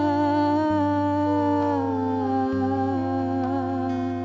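Soft, slow worship music: voices hum or sing long held notes in harmony that step slowly downward, over a steady low sustained note.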